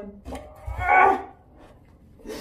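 A person's short, strained vocal cry of effort about a second in, with low thuds of body movement beneath it.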